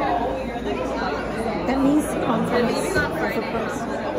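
Indistinct chatter of several voices talking over one another in a busy café, steady throughout.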